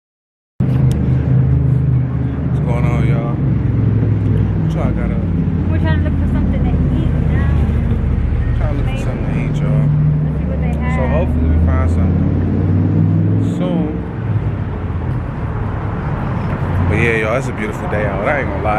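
Street traffic: a low, steady hum of car engines running close by, shifting in pitch as vehicles move, with people talking faintly in the background.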